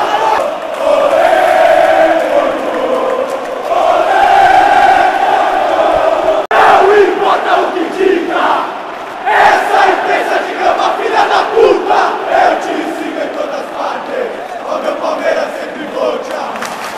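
A stadium crowd of football supporters singing and chanting together, with long held notes at first. After a brief break about six and a half seconds in, shorter rhythmic chanted phrases follow.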